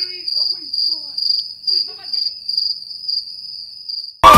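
A steady high-pitched ringing tone with a slightly pulsing texture, cut off abruptly just after the four-second mark.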